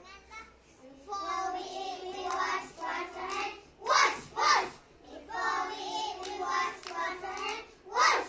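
A group of young children performing a choral speaking piece in unison, their voices starting together about a second in, with two loud shouted syllables about four seconds in.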